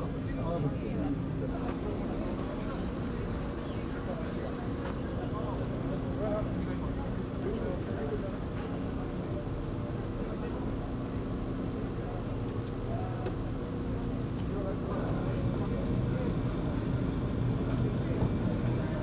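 Steady low background rumble with a faint held hum, and indistinct voices mixed in, a little louder near the end.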